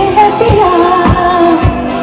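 Live pop song played loud through a stage sound system: a singer's voice carrying the melody over a band, with a drum beat about twice a second.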